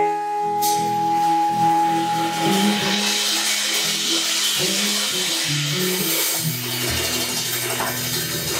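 Live blues trio playing: an electric guitar holds one long ringing note for about three seconds over a moving bass-guitar line, while the drummer's cymbals build into a steady wash.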